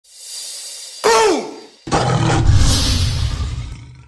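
Channel intro sound effects for an animated logo: a rising whoosh, a short sound sliding steeply down in pitch about a second in, then a heavy boom just before two seconds whose deep rumble fades out by the end.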